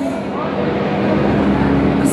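Live worship band's keyboard holding a sustained chord through the PA, with a deep bass note swelling in about halfway through.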